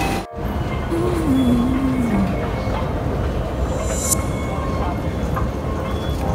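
Steady rumble of rail vehicles and busy city ambience, with a single tone gliding down about a second in and a short high hiss about four seconds in.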